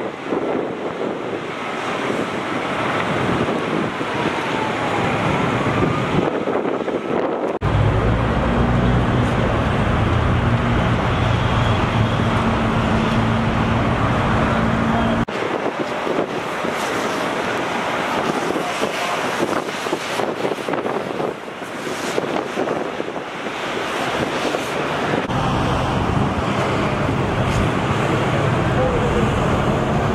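Outdoor noise at a burning overturned semi truck: a steady rushing hiss throughout. About eight seconds in and again near the end, the low steady hum of a heavy engine idling joins it. The sound changes abruptly at cuts between shots.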